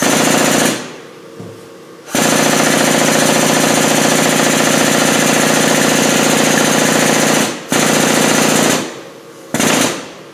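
Air-over-hydraulic pump of a shop press running in bursts, driving the ram down onto a connecting-rod wrist-pin bushing tool: a fast, even chattering with a hiss on top. It runs briefly at first, then for about five seconds, stops for a moment, runs again for about a second, and gives one short burst near the end.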